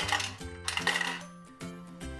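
A quarter clinking into a toy Dubble Bubble gumball bank and its coin mechanism clicking as the handle is turned, with a burst of clicks at the start and another about three quarters of a second in, over background music.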